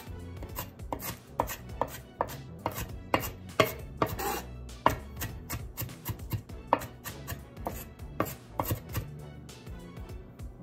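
Stainless steel chef's knife finely mincing Japanese long onion on a wooden cutting board. The blade knocks on the board in quick, irregular strokes, about three a second, over a faint steady low hum.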